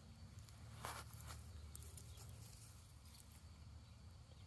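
Near silence with faint scattered rustles and scratches of chickens foraging and pecking in soil and leaf litter, the clearest about a second in.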